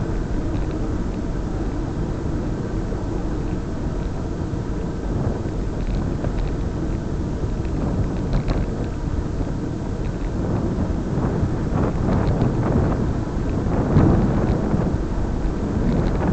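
Steady rumble of wind buffeting a moving camera's microphone, mixed with road noise, swelling louder in gusts near the end.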